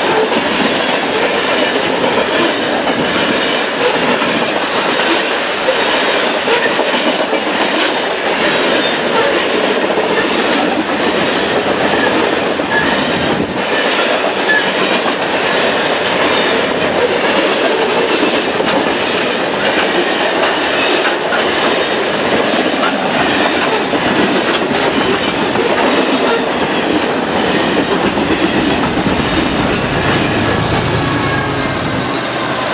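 Loaded coal hopper cars of a freight train rolling past at close range: a steady, loud rumble with wheels clicking over the rail joints.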